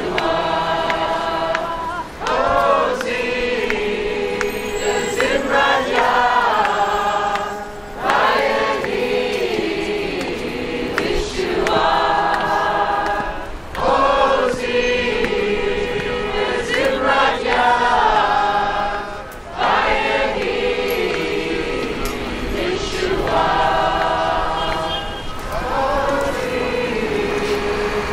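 A crowd of voices singing a song together, in repeated phrases of about six seconds with short breaks between them.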